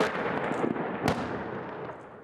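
Two loud weapon reports, one at the start and a second about a second later, each followed by a long rolling echo that dies away.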